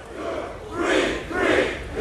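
Concert crowd shouting back "one, one" in unison in a call-and-response: two swells of many voices about a second and a second and a half in.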